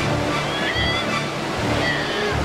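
Steady rushing of a fast-flowing river over rocks, under background music.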